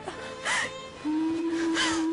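A woman crying, with a sharp gasping sob about half a second in, over sad background music that settles into one long held note about a second in.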